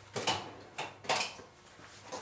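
Drawer of a steel tool chest being worked, with metal tools clinking and rattling inside as a hand takes out a plane float: a few short clatters in the first second or so.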